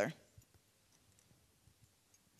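The tail of a woman's sentence at the very start, then a quiet room with a few faint, short clicks.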